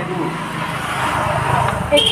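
A road vehicle passing, a steady rush of noise that swells a little past the middle and eases off near the end.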